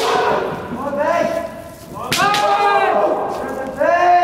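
Kendo kiai: competitors' long, drawn-out shouts, one after another, as they face off. A sharp crack near the start and another about two seconds in, from a bamboo shinai or a stamping foot on the wooden floor.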